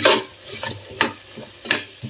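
A metal ladle scraping and stirring onion-tomato masala as it fries in oil in an aluminium pressure cooker, three strokes about a second apart, with a low sizzle between them.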